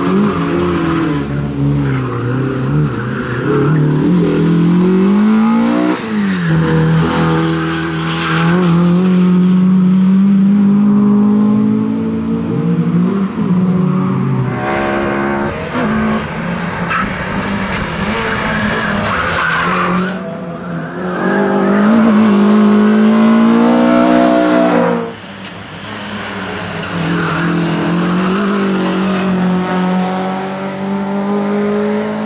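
Honda Civic hatchback race car's four-cylinder engine revving hard, its pitch climbing and dropping again and again through gear changes and lifts for corners, with tyre squeal as it slides through the bends.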